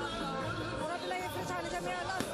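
Speech over music that keeps playing, with no break or sudden sound.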